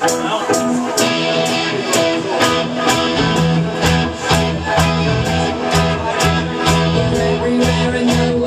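Live rock band playing loud through a PA: electric guitar and bass over drums keeping a steady beat.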